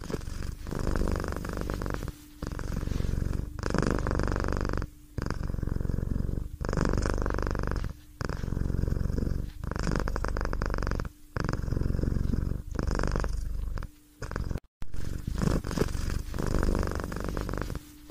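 A cat purring, in stretches of one to three seconds broken by short pauses as it breathes.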